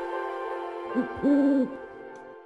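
A cartoon owl hooting twice, a short hoot and then a longer held one, over the fading last chord of soft music.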